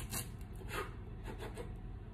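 Kitchen knife cutting lengthwise through a fried corn cob still in its husk: a few short, quiet cutting strokes.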